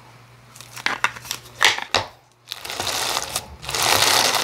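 Crunchy lava rock slime with a clear base being handled and pressed, giving scattered sharp crackles at first. About halfway in it turns to dense, continuous crunching as both hands press down into it.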